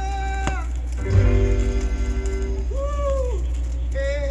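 Reggae dub plate playing on a turntable: a singing voice over the music, with a strong bass note struck about a second in. A steady low hum runs underneath.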